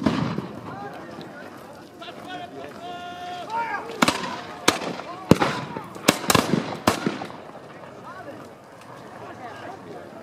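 Black-powder flintlock muskets fired by a line of infantry in a ragged volley: six sharp shots in about three seconds, starting some four seconds in.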